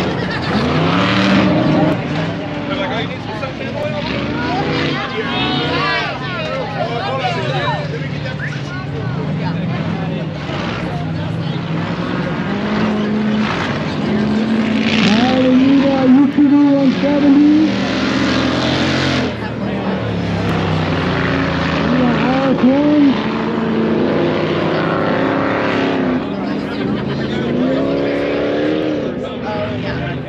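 Engines of 4400-class off-road race cars revving up and down again and again, their pitch rising and falling as the cars work around the course, with voices mixed in.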